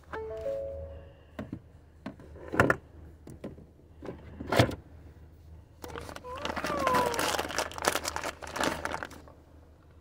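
Plastic candy bag crinkling as a hand handles it: a few sharp crinkles in the first five seconds, then a longer stretch of rustling from about six to nine seconds in, over a low steady car-cabin hum.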